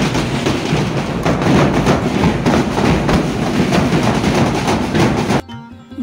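Loud street band-party music, mostly dense percussion with little clear melody, cutting off suddenly near the end.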